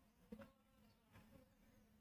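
Near silence: faint scrapes and one small click about a third of a second in from stirring custard powder paste in a steel bowl, over a faint low hum.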